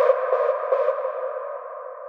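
Outro of a hard techno track: with the kick drum gone, a filtered synth sound pulses a few times in the first second. It then settles into one steady tone that fades out.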